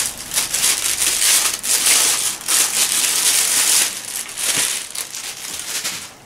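A clear plastic packaging bag crinkling and rustling as it is handled and opened. It is loud and continuous for about four seconds, then turns into lighter, scattered crinkles.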